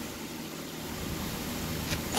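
Steady background hiss at a moderate level, with no tool running and no distinct events.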